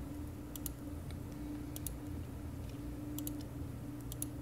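Scattered clicks of computer keys typed one-handed, mostly in quick pairs, about six times, over a low steady hum.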